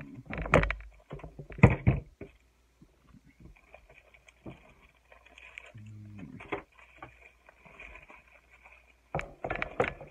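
A small plastic mail package being handled and opened, crinkling and rustling, with two loud sharp crackles in the first two seconds and another cluster of crackles near the end.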